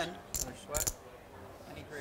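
Low, indistinct voices with two short, sharp clicks about half a second apart near the start, then quieter room tone.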